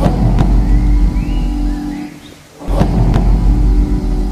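Two deep bass-drum booms, one at the start and one nearly three seconds later, each ringing out for about two seconds over a low sustained musical tone.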